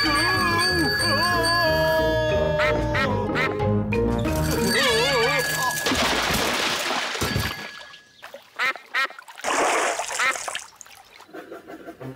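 Cartoon music with sliding, wavering tones, then a big water splash about six seconds in as something lands in a pond, followed by ducks quacking.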